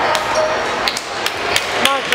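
Sharp smacks of volleyballs being struck, five or six in two seconds, each with a short echo in a large gym hall, over a steady background of voices.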